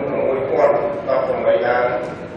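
A man speaking in Khmer, reading a report aloud into a microphone.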